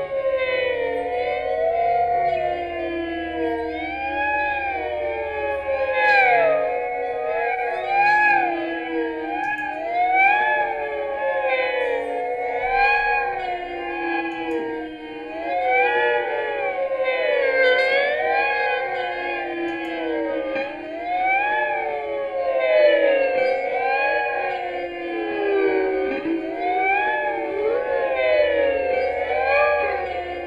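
Electric guitar played through effects, many overlapping tones gliding up and down in pitch like sirens, in a continuous layered wash with no steady beat.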